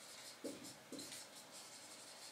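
Faint scratching and rubbing during a quiet pause, with two short faint sounds about half a second and a second in.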